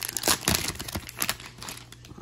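Crimped plastic wrapper of a Topps Heritage baseball card pack crinkling in quick, irregular crackles as it is pulled open by hand.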